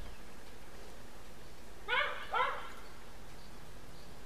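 Two short, high-pitched yelps from an animal, about half a second apart, halfway through, over quiet room tone.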